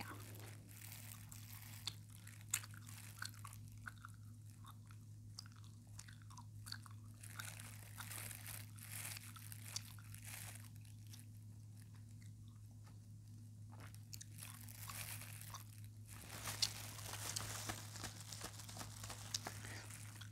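Faint crinkling and soft crunchy handling sounds from pink and white props worked close to the microphone, scattered clicks and crackles over a steady low hum.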